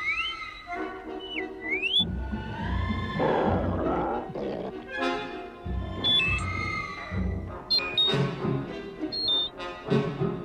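Orchestral film score with brass and French horn. Near the start come two short rising electronic whistles from the droid R2-D2.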